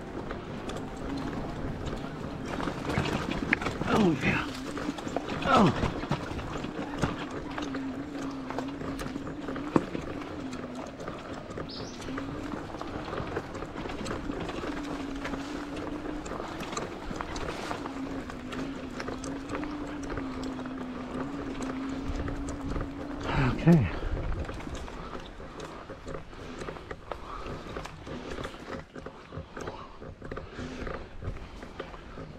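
E-bike rear hub motor whining steadily, its pitch wavering slightly, over tyre rustle and small rattles from the bike on a dirt trail. Three brief sliding, voice-like sounds come through: two in the first six seconds and a louder one near twenty-four seconds. The whine stops soon after as the bike slows almost to a stop.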